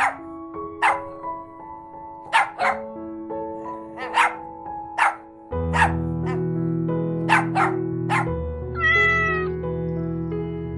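Background music with a run of short sharp sounds about every second and a half. About nine seconds in, a cat meows once.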